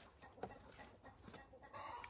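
Faint clucking of chickens, with a slightly louder call near the end, over soft rustling of seed-starting mix being scooped by hand in a plastic tote.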